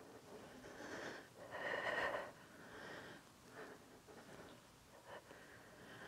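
A woman's faint exhaling breaths during a workout, several short ones, the longest and loudest about two seconds in.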